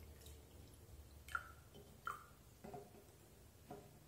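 Liquid poured from two small energy-shot bottles into drinking glasses, heard faintly as drips and splashes, with a few short clinks and knocks as the glasses and bottles are handled and set down on the table.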